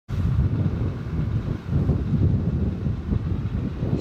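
Wind buffeting the camera's built-in microphone in uneven, rumbling gusts.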